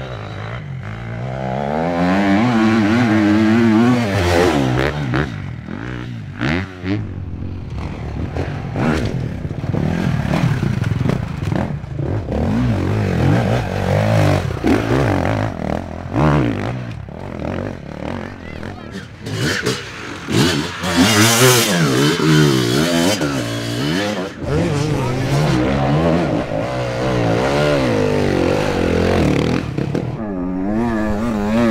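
Enduro dirt bike engines revving up and down as riders work the throttle over a rocky climb, with short knocks and clatter from tyres and stones and people's voices mixed in.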